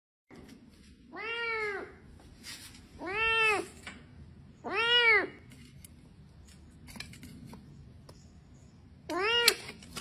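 A kitten trapped inside a floor drain meowing four times, each cry rising then falling in pitch, with pauses between. Light scraping and a sharp click near the end come from a tool working the metal drain cover loose.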